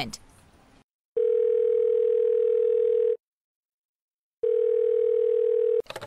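Telephone ringback tone: two long steady rings, the first about two seconds and the second a little shorter, with silence between. This is the line ringing through as the call is transferred.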